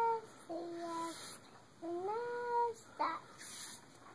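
A young girl's sing-song voice, with three long drawn-out notes each held for up to about a second on a fairly steady pitch, as she reads aloud from a picture book.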